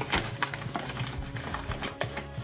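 Paper flour bag rustling as a plastic measuring cup scoops through the self-raising flour inside it, with a few small knocks of the cup.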